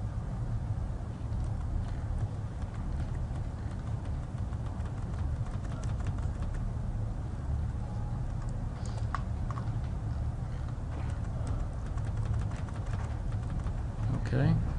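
Scattered clicking of computer keyboards and mice over a steady low room hum, the clicks coming more often in the second half.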